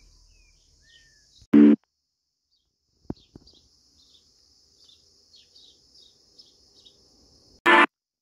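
Birds chirping in short, repeated calls over a steady high-pitched buzz. Two brief loud voice-like sounds break in, one about a second and a half in and one near the end.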